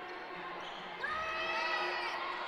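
Faint on-court sounds of a basketball game: a ball being dribbled on the hardwood floor, with a faint, held high-pitched tone joining about a second in.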